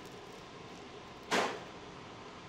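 A single short, sharp rush of breath through the mouth from a person taking a bite of hot deep-fried food, about a second and a half in, over quiet room tone.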